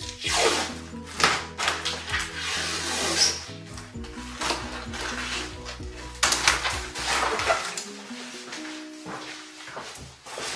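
Background music, with packing tape pulled off the roll and stuck down onto plastic export wrap in several short rips: loudest about half a second in, at about a second, and twice more a little after six seconds.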